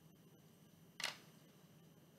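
A single short, sharp click about a second in, over faint room tone.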